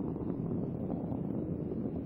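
Space Shuttle Endeavour's rocket engines during ascent: a steady, dense low roar with faint crackle.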